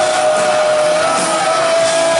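Punk rock band playing live: guitars, bass and drums, with one high note held for about two seconds that steps up slightly in pitch near the end.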